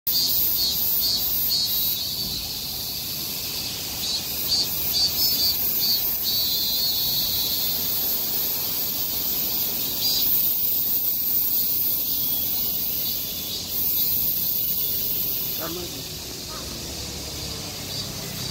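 Steady, high-pitched shrilling of insects, pulsing in the first several seconds and easing slightly near the end.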